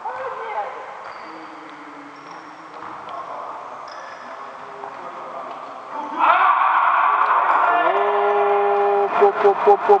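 A man's long, drawn-out exclamation, "waaa… oooh", held on one steady pitch and breaking into quick pulses near the end. It starts about six seconds in, after several seconds of quieter sound.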